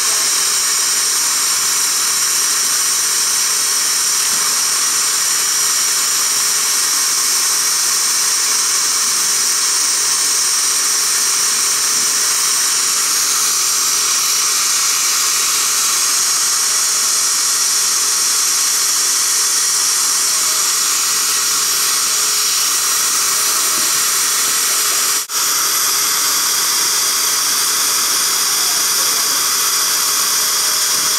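Steady, high-pitched hiss of an Er,Cr:YSGG Waterlase dental laser working with its air-water spray during gum surgery, with one brief dropout near the end.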